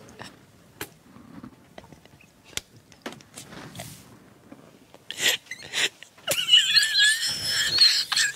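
Stifled laughter: quiet breathy sounds at first, a short burst about five seconds in, then a long high-pitched, wavering squeal of laughter near the end.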